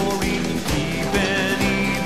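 The cartoon's country-western theme song playing, with a steady beat under pitched melody lines.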